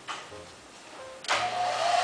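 Handheld blow-dryer switched on about a second in, then running with a steady rush of air.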